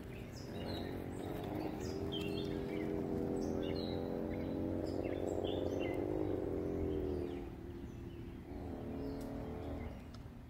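Small mini bike motor running steadily at speed, its pitch rising about a second in, holding, then fading after about seven seconds as the bike moves away, and coming back faintly near the end. Birds chirp throughout.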